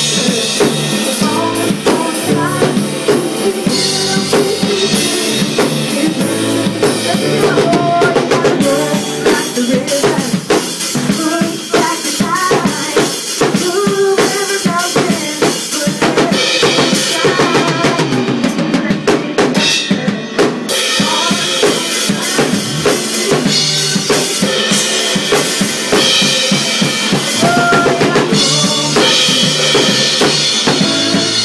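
Full drum kit played steadily: kick drum, snare and Sabian AA cymbals keeping a driving rock beat, over a recorded band track with pitched instruments and melody.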